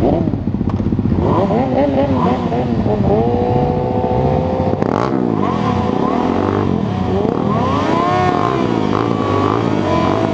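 Several racing motorcycle engines, including the onboard Honda CBR600RR's inline-four, running and revving together on the grid, with many overlapping pitches rising and falling as throttles are blipped.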